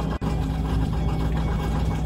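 Steady low mechanical hum with a few held low tones, like a motor or fan running in a kitchen, with a very short dropout about a fifth of a second in.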